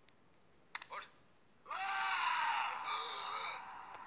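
A brief sharp crack a little under a second in, then a voice calling out loudly for about two seconds, with a strongly rising and falling pitch.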